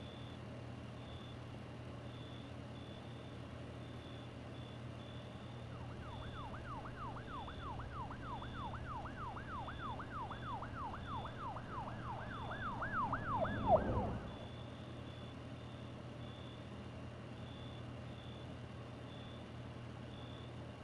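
Steady rain with a distant emergency-vehicle siren in fast yelp mode, about three rising-and-falling wails a second. The siren comes in about six seconds in, grows louder, and cuts off suddenly with a short bump about fourteen seconds in.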